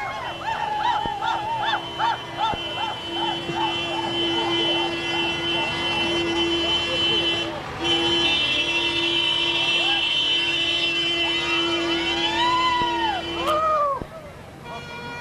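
A vehicle horn held down in one long steady blast, broken briefly about halfway, with quick rising-and-falling whoops over it for the first few seconds and a few slower ones near the end.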